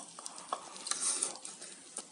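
Meat and shrimp sizzling softly on an electric griddle, with a few light clicks.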